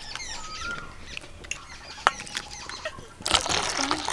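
Birds chirping faintly, a single click about two seconds in, then near the end about a second of pouring as water is ladled into a steel bowl of milk powder, turning it into frothy milk.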